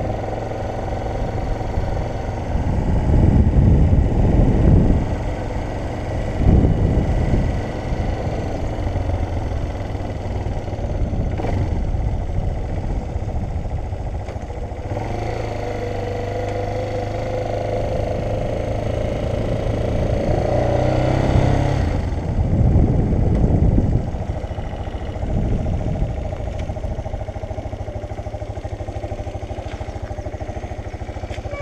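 Motorcycle engine running at low road speed through town, with spells of louder low rumble from wind on the microphone a few seconds in and again about two-thirds through; the engine note rises briefly around the twenty-second mark.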